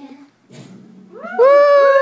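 A brief hush, then about a second in a long, loud, howl-like voice cry that holds one note and slowly sinks in pitch.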